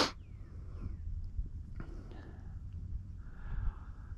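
Low steady rumble of wind on the microphone, with a faint tick a little under two seconds in.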